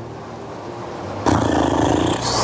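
A quiet pause, then about a second in a loud, rough roaring noise starts suddenly and carries on.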